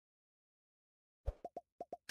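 Silence, then about a second and a quarter in, a quick run of about five short, soft pops: the sound effects of an animated like-and-subscribe button overlay.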